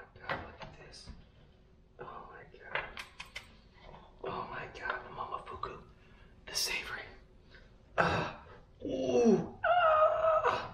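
Scattered clicks, knocks and short rustles of food prep on a counter: a knife and utensils on a plastic cutting board, and a seasoning jar being picked up and handled. There is low muttering near the end.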